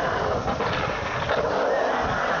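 Skateboard wheels rolling on the concrete of a skate bowl, a continuous rumble whose pitch rises and falls as the board carves up and down the walls.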